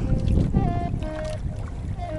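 A low, steady rumble of the outrigger boat under way on the water, with wind, under soft background music of a few held notes that change about every half second.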